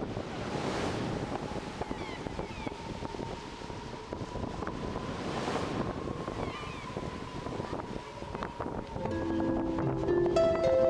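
North Sea surf washing and breaking, with wind on the microphone; the wash swells about a second in and again about five and a half seconds in. Music comes in near the end.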